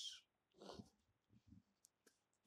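Near silence after a spoken word trails off, with a faint breath and a tiny click.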